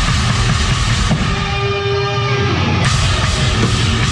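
Heavy metal band playing live on stage: drum kit, distorted electric guitars and bass. About a second and a half in, the low drums drop away under a single held note, and the full band comes back in with a crash just before three seconds.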